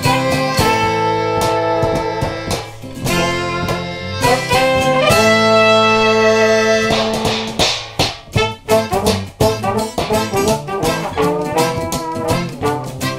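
Instrumental intro of a ska song played acoustically: trombone and trumpet play a melody of long held notes over strummed acoustic guitars. About seven seconds in, the horns switch to shorter, choppier notes over a steady strummed rhythm.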